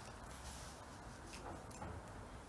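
Quiet room tone with a few faint brief knocks and rustles of over-ear headphones being pulled on and settled over the ears, mostly in the second half.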